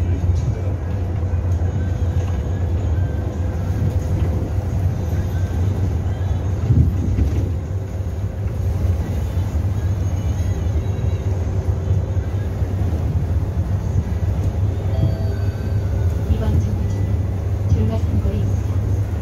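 Cabin noise inside a natural-gas city bus on the move: a steady low engine and road rumble.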